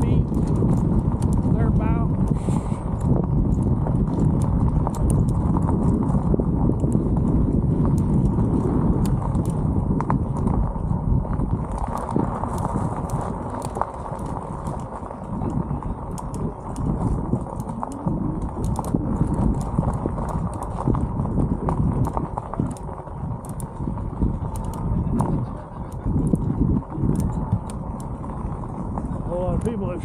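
Bicycle tyres rolling over a gravel road, with loose stones crunching and clicking under the wheels. A low rumble of wind on the helmet microphone runs underneath.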